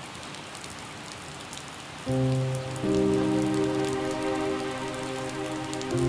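Heavy rain falling steadily. About two seconds in, music of soft held chords comes in over the rain.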